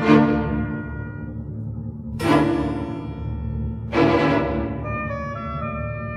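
Orchestral music: three loud accented chords about two seconds apart, each dying away over held low notes, with sustained tones near the end.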